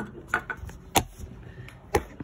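A few light metal clicks and taps as a brass part is hand-threaded into an oxygen regulator's body, with one sharper click about a second in.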